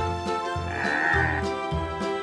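Background music with steady tones and bass notes, over which a water buffalo calls once, a call a little under a second long near the middle.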